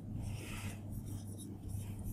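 Marker pen scratching on a glass lightboard as letters are written, in short strokes, over a steady low hum.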